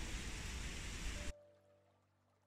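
Steady rushing of water over river rapids that cuts off abruptly just over a second in, leaving near silence.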